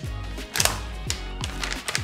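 Background music with a steady low beat under the crinkling, clicking rip of a plastic jerky pouch being pulled open at its top seal. The sharpest rip comes about half a second in, with a few more around the middle.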